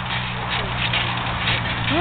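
Indistinct voices of a group of people in the background over a steady low hum, with no clear single sound standing out.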